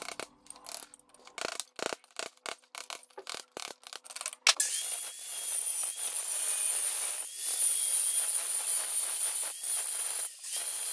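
A steel chisel chipping and scraping at a natural stone block in quick, irregular strikes. About four and a half seconds in, an angle grinder with a diamond grinding wheel cuts in against the stone and grinds steadily with a high whine.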